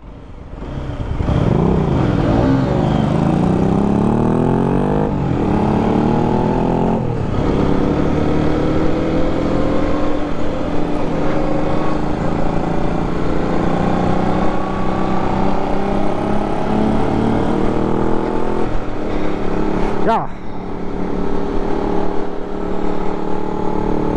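Aprilia RS 125's single-cylinder four-stroke engine pulling away from a standstill, its pitch climbing through the gears with brief breaks at the upshifts about five and seven seconds in, then a long slower climb at part throttle. It eases off briefly about twenty seconds in before pulling again.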